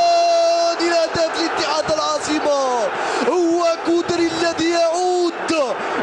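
A football commentator's excited, drawn-out shouting: long held notes that bend, slide down and break, as a goal is scored.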